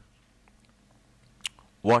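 Quiet room tone with a single short click about one and a half seconds in, then a man says one word near the end.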